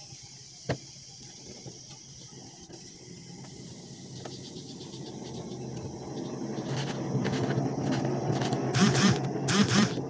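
Kitchen knife chopping tomatoes on a cutting board: a run of quick, sharp strikes in the last few seconds, over a low background noise that swells from about halfway.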